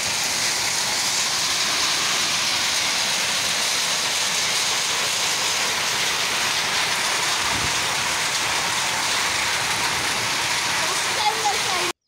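Heavy rain mixed with hail pelting the ground: a dense, steady hiss that cuts off suddenly at the end.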